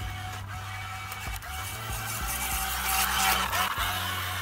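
A vintage kit-built RC model boat's motor whirring as the boat runs across a pool, louder about three seconds in as it passes close, with background music underneath.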